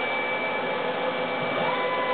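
Steady whooshing background noise with a few faint, steady high tones running through it.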